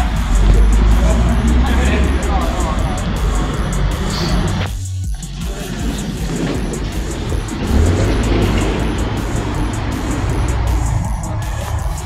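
Cars passing on a city street, with a steady low rumble of engines and tyres. Music and voices are heard along with it. The sound drops out abruptly for a moment about five seconds in.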